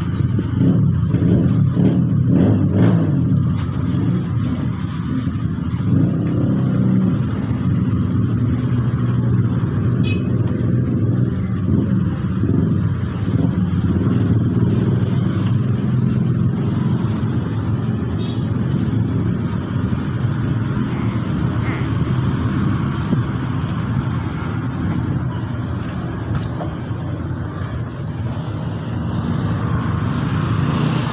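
A steady low hum of a running engine or motor.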